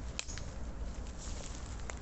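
Rustling and crackling steps on dry forest leaf litter, with a few sharp clicks and a low rumble of the phone being handled while walking.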